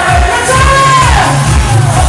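Loud pop-style party music with a singer. About half a second in, the steady beat drops away under a held bass note and a long sung note that slides down near the middle.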